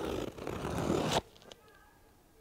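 Scissors slitting the packing tape on a cardboard box: a rasping tear in two strokes that stops abruptly a little over a second in, followed by a couple of faint clicks.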